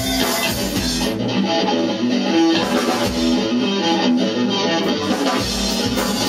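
Live rock band playing an instrumental passage without vocals, electric guitars to the fore over bass and drums.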